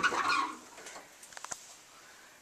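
A linen closet door being opened, with a few short light clicks and knocks about a second to a second and a half in.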